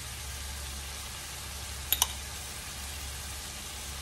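Ground beef and vegetables frying in a cast-iron skillet, a steady soft sizzle over a low steady hum, with two quick clicks about halfway through.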